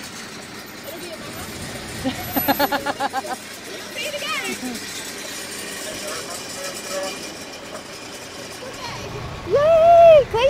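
Fire engine coming up the street, its engine running under a steady traffic-like background, with short bursts of people's voices about two seconds in and again near the end.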